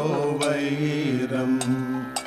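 Kathakali vocal music: a singer glides down into a long held note. Sharp metal strikes keep time about every half second, in the manner of the ilathalam hand cymbals of Kathakali.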